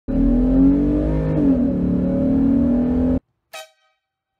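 Car engine running hard at a steady high pitch, cut off suddenly about three seconds in, followed by a brief bright ringing chime.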